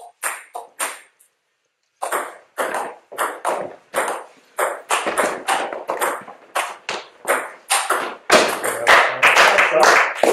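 Table tennis ball in a rally: two short bounces right at the start, then from about two seconds in a steady run of sharp clicks off bats and table, coming faster and denser over the last two seconds.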